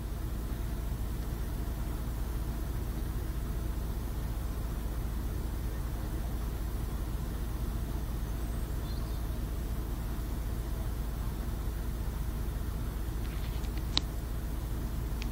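Steady low outdoor rumble with no distinct events, of the kind made by distant engines or machinery.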